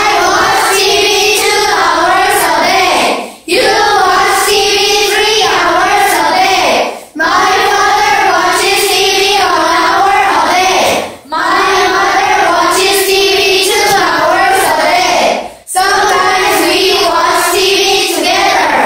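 A group of children reciting a memorized English passage aloud in unison, in a sing-song chant. It comes in phrases of about four seconds with short breaks between them.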